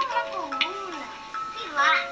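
Eerie background music of slow, sustained chime-like synth notes that step between pitches, with a voice gliding slowly up and down beneath them and a brief burst of speech near the end.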